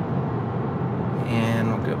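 Steady road and tyre noise inside the cabin of a 2024 Subaru Impreza RS driving along, with a voice starting over it near the end.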